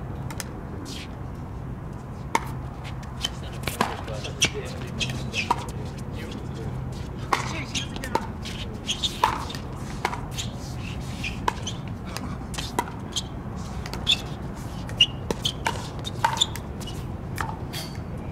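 Pickleball rally: paddles striking a plastic pickleball in sharp, hollow pocks, irregular at roughly one a second, now and then two in quick succession, from a couple of seconds in to near the end. A low steady hum runs underneath.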